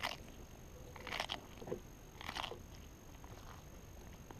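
A tortoise biting into a whole raw cucumber: three crisp crunching bites about a second apart.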